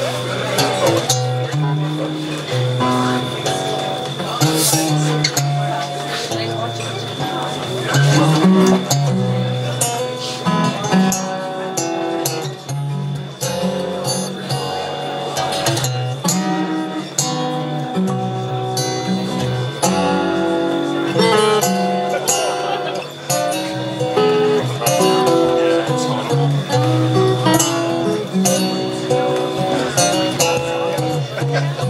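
Two acoustic guitars playing an instrumental duet together, a steady run of picked notes and chords with the melody moving throughout.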